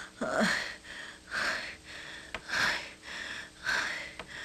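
A person breathing heavily in loud, rhythmic gasps, about one breath a second, with a short falling voiced moan on the first breath.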